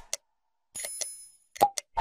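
Sound effects of a subscribe-button animation: two quick mouse clicks, then a bell ringing with several high tones for about half a second, then more clicks near the end.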